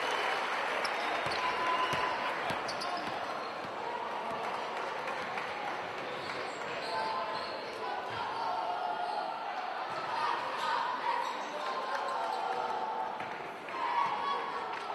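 A basketball bouncing on a wooden court during live play, short thuds of the dribble under a steady murmur of voices from players and spectators.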